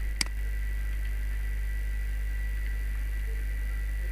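A single computer mouse click about a quarter second in, over a steady low electrical hum and a thin, steady high whine.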